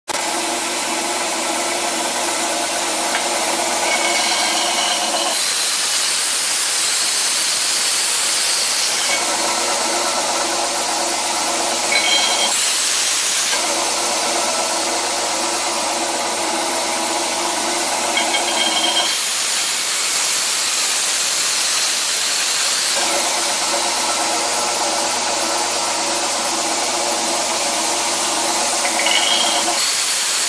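Gekon Mikro belt grinder running with a steady motor hum as a metal workpiece is ground against the open, unsupported stretch of its abrasive belt. The grinding is a loud hiss that swells over the hum three times, for a few seconds each.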